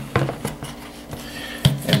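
Clear plastic lid pressed and snapped onto a plastic batter-shaker bowl: a quick cluster of light clicks and knocks in the first half second, then quieter handling of the plastic.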